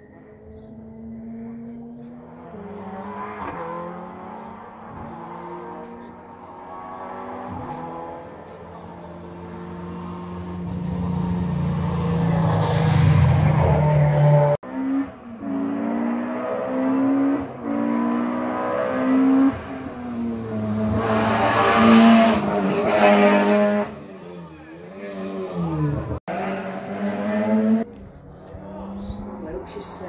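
Rally car engine revving hard and climbing through the gears, its pitch rising and falling again and again as it comes closer, loudest about twenty-two seconds in.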